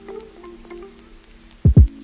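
Background music: sustained synth tones with a few short notes over them, and two deep thuds close together near the end.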